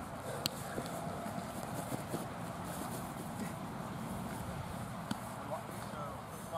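Outdoor field background of distant, indistinct voices over a steady noise, with two sharp slaps, one about half a second in and one near the end.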